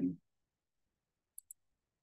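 Near silence broken by two faint, sharp clicks in quick succession about a second and a half in, from a computer mouse being used to scroll through a video-call participant list.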